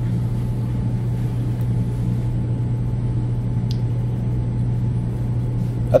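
A steady low hum with an even rushing noise over it, unchanging for the whole stretch: the background noise of a room picked up through an open microphone.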